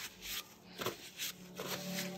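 Paper towel rubbing against nitrile-gloved hands in a few short rustling wipes, cleaning resin off the gloves.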